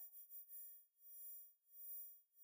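Near silence between spoken phrases, with only a faint steady tone in the background.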